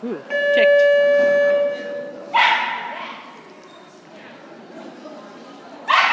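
A loud, steady buzzer-like tone sounds for about two seconds, the game's timing signal in an agility Jackpot run. A dog gives a sharp bark just after it stops, and again at the very end.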